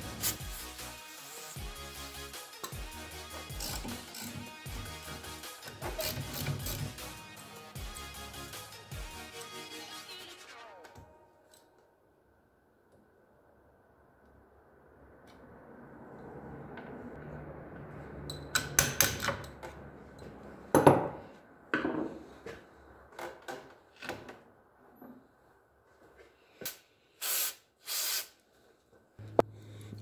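Background music for the first ten seconds or so, then a short hush. After that comes a scattered run of sharp metal clicks and knocks from hand tools being fitted to a steering knuckle held in a bench vise.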